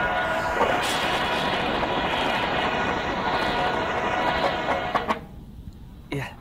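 Drum and bugle corps drumline and horns playing a loud, busy ensemble passage with a dull, old-tape sound, then cutting off together about five seconds in.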